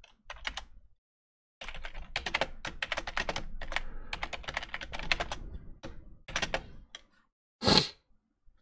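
Typing on a computer keyboard: a quick, uneven run of keystrokes clattering for several seconds, ending with a brief, louder hiss-like burst near the end.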